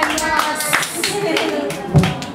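People clapping their hands, several claps a second, with voices talking over them, and a low thump at the very end.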